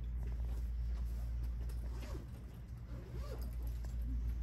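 Steady low room hum, with a couple of faint, brief pitched sounds in the middle.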